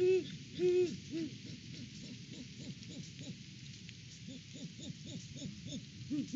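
Great horned owls hooting: a few loud, deep hoots in the first second or so, then a quicker run of softer hoots.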